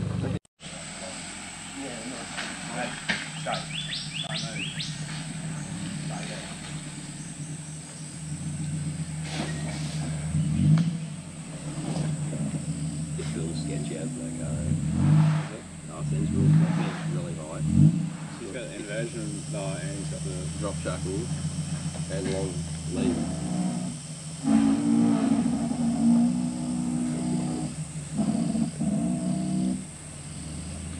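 A 4WD's engine running steadily, revved up and back down several times in quick bursts through the middle.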